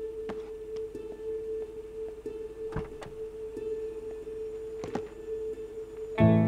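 Quiet background score: one held drone note with sparse, soft notes sounding every half second or so.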